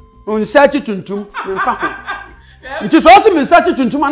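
A man talking and chuckling as he speaks, with faint background music.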